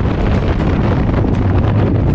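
Wind noise in skydiving freefall, the rushing air blasting over the camera's microphone: loud and steady, heaviest in the low end.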